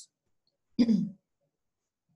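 A person clearing their throat once, briefly, a little under a second in, with silence around it.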